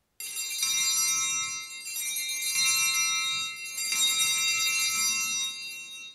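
Altar bells (Sanctus bells), a cluster of small bells, rung in three swells of bright ringing at the elevation of the host just after the consecration.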